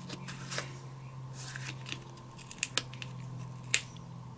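Paper being handled: fingers shifting and pressing a die-cut cardstock sentiment onto a card, with soft rustles and a few small sharp taps, the loudest near the end. A steady low hum runs underneath.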